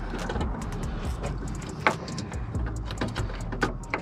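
Small plastic clicks and rustling from hands working behind a car headlight, pushing the bulb's retaining clip back into place, with one sharp click about two seconds in and a few more near the end, over a steady low hum.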